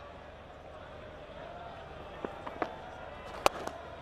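Low, steady cricket-ground crowd ambience, then the sharp crack of the bat hitting the ball about three and a half seconds in.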